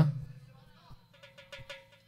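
A man's voice over a PA system trails off at the start, then a faint, brief snatch of music with quick ticks and a held note about a second in.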